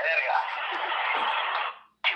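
A recorded voice from a voicemail message playing through a smartphone's loudspeaker, sounding thin, with no deep tones. It fades out just before the end.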